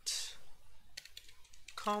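Typing on a computer keyboard: a few scattered keystrokes as the end of an email address is typed. There is a short hiss at the very start.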